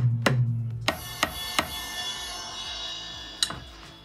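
Roland electronic drum kit played with sticks through a speaker: a quick run of drum hits in the first second and a half, then a ringing cymbal sound that fades out over about two seconds, with one more tap near the end.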